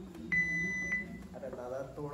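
A digital countdown timer giving one steady high electronic beep lasting just over half a second: the countdown reaching zero, the start signal for a timed challenge.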